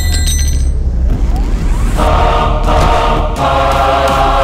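Dramatic film-score music: a sharp ringing hit at the start over a deep, steady bass, with a chanting choir coming in about halfway.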